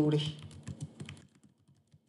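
Typing on a computer keyboard: a quick run of keystrokes over the first second and a half, thinning out and then stopping.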